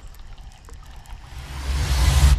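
Quiet water noise around the boat, then a rushing splash that swells over the last half second as a bass chases the swim jig being reeled in.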